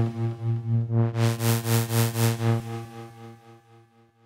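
Roland System-100 software synthesizer playing its 'SQ Mothership' patch: one low held note that throbs about five times a second. Its tone brightens in the middle, then the note fades away near the end.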